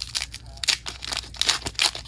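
Foil Pokémon booster pack being torn open and peeled back by hand: a quick run of crinkling rips of the metallic wrapper.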